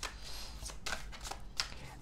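A deck of tarot cards being shuffled by hand: a quick, irregular run of soft card slaps and rustles.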